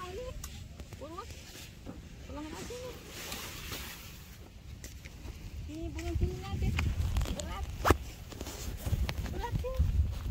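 Faint background voices, with the rustle and knocks of a nylon dome tent being lifted and shifted by hand; the handling noise grows louder over the second half, with one sharp knock about eight seconds in.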